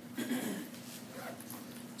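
A brief, soft voiced sound from the lecturer, like a short hum or murmur, about a quarter of a second in. Under it runs a steady low electrical hum.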